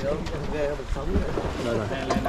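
Several people talking over one another, with wind buffeting the microphone.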